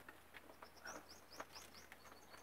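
Faint, quick series of short high chirps, about four a second, from a small bird, with a few light handling clicks.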